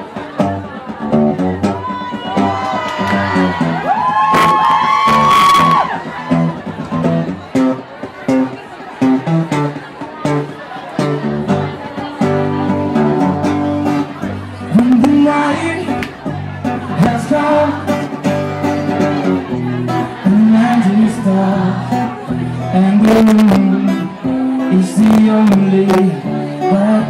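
Live steel-string acoustic guitar strummed in steady chords with a man singing into a microphone. A higher voice from the audience rises over the music a few seconds in.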